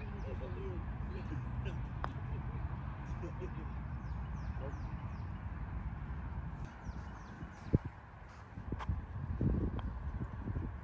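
Putter striking a golf ball on a putt, a single light click about two seconds in, against a steady low outdoor rumble. A sharper knock, the loudest sound, comes about three quarters of the way in.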